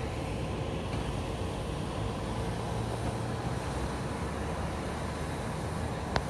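Steady low rumble of road traffic, a little stronger about halfway through.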